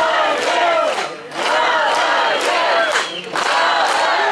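Audience crowd shouting and cheering together, many voices at once, with a few sharp claps among them.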